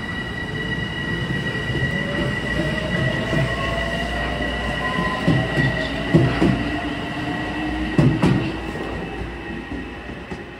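Metro-North M7 electric multiple-unit train pulling away. It has a high steady whine from its traction drive and a lower tone that slowly rises as it gains speed. Wheels clack over rail joints about halfway through and again near eight seconds in, and the sound then fades as the train recedes.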